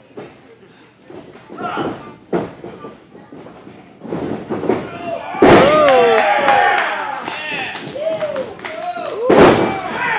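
A wrestler's body hitting the ring mat with a loud slam about halfway through, followed by spectators shouting in reaction, then a second loud slam near the end.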